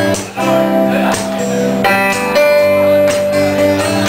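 Live rock band playing an instrumental passage, led by strummed acoustic guitar chords with a second guitar, the chords changing every second or so.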